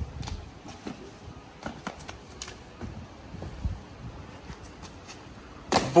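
Light scuffs and taps of trainers on paving over quiet outdoor background, then a loud sudden thump near the end as a parkour jump lands.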